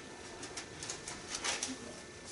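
Thin Bible pages being leafed through, a few soft paper rustles, the strongest about halfway in.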